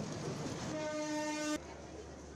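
Diesel locomotive passing close by, its running noise joined partway through by one steady horn blast that cuts off suddenly after about a second.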